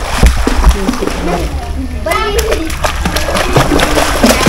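Water splashing in a swimming pool as children swim and kick, with children's voices calling over it.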